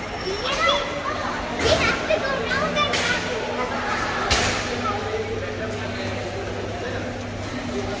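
Indistinct chatter of people in a busy lobby, over a steady low hum, with three sharp knocks in the first half.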